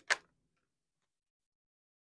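Tarot cards clicking against the deck in the hands, one sharp click just after the start.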